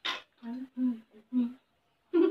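A woman's voice humming short 'mm' sounds, three or four in quick succession, after a brief hiss at the start.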